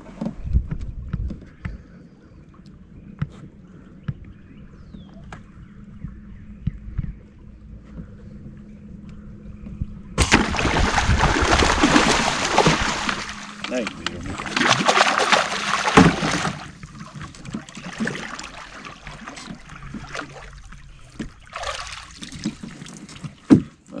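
An arrow-shot fish thrashing at the water's surface in loud splashing bursts that start suddenly about ten seconds in, come again a few seconds later and then die down into smaller splashes. Before that, a faint steady hum with a few small knocks.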